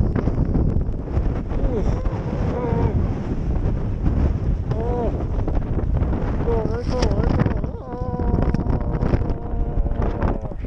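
Strong wind buffeting the camera microphone on an open chairlift in a snowstorm, a steady heavy rumble. A few short wordless voice sounds rise and fall through it, and a held note sounds near the end.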